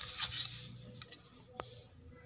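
A hand rustling against the pages of a book while lifting out its audio CD, mostly in the first half-second, followed by a couple of faint clicks.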